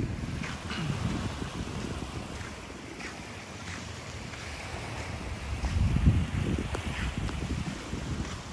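Wind buffeting the microphone over gentle surf washing onto a beach, with a stronger gust about six seconds in.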